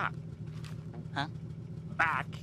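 Cartoon boat engine idling with a steady low hum, and a short vocal sound about a second in.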